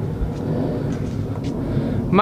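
Steady city background noise: a low rumble of distant road traffic heard from a rooftop, with no single event standing out.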